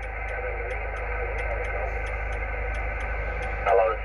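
Icom IC-706 HF transceiver receiving single-sideband on the 20-metre band: steady narrow-band static with a weak, garbled voice under it, then a stronger voice saying "hello" near the end. A faint, quick ticking runs through the static.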